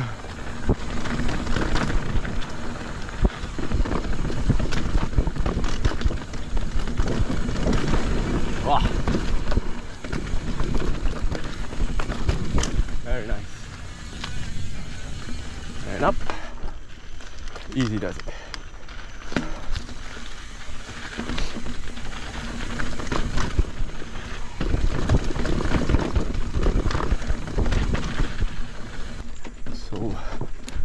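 Mountain bike on Michelin Wild Enduro tyres riding fast down a dirt trail: wind rushing over the helmet-camera microphone, tyres rolling over dirt and roots, and the bike rattling with frequent knocks over bumps.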